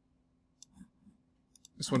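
A handful of faint, short computer mouse clicks spread over the first second and a half, then a man starts speaking near the end.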